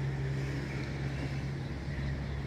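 A steady low engine hum, unchanging, with a little wind on the microphone.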